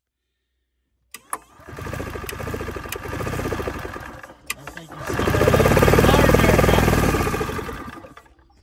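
EZGO gas golf cart engine being cranked over in two tries of a few seconds each, with rapid, even pulses; the second try is louder. Clicks come just before the first try and between the two. The owner judges the engine toast.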